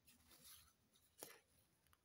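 Faint scratching of a pencil on paper, with one sharp tap a little over a second in as the plastic ruler is shifted on the page.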